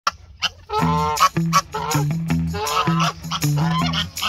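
Chinese goose honking repeatedly, mixed with background music that has a steady bass line.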